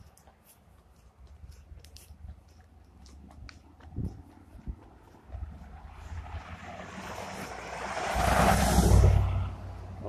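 A road vehicle driving past close by, its engine and tyre noise swelling over about three seconds to a peak near the end, then quickly falling away.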